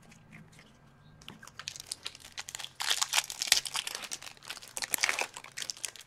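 Crinkling and crackling of a foil trading-card pack wrapper being handled by hand. It is faint at first and starts about a second in, then becomes a dense, louder crackle from about three seconds in.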